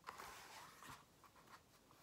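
Faint rustling and sliding of paper as a picture book is handled and its page turned, with a light tap about a second in.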